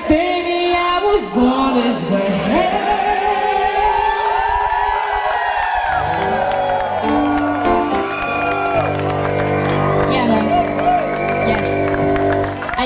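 Live pop song: a female singer's wavering, sustained vocal lines over a Yamaha synthesizer keyboard, with a crowd cheering and whooping. About halfway through, the voice gives way to long held keyboard chords over a steady bass as the song draws to its close.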